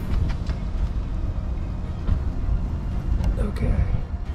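Wind buffeting an outdoor camera microphone: a loud, uneven low rumble.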